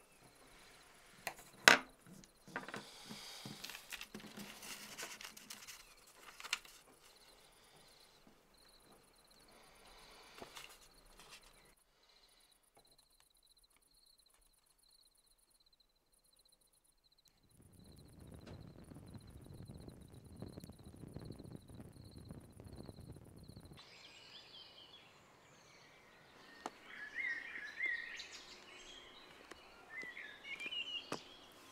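Quiet sounds of pen and paper being handled on a wooden table, starting with a sharp tap, under a faint steady chirping of crickets. A stretch of louder noise comes in the middle. Near the end the sound turns to open-air ambience with short bird calls.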